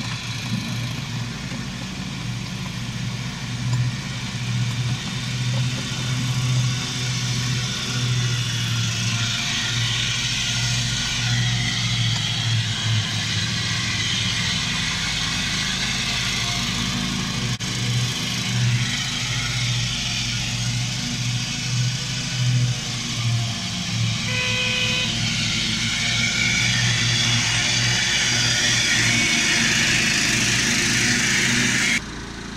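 Miniature railway train running with passengers aboard: a steady engine drone with the rattle of the carriages on the track, mixed with a ride-on lawn mower mowing close beside the line. There is a brief toot about three-quarters of the way through.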